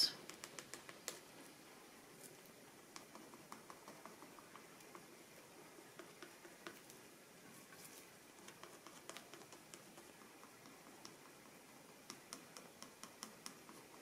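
Faint scratchy ticks and scrapes of a cut-up plastic credit card dabbing and dragging acrylic paint onto paper in little marks, coming in irregular clusters.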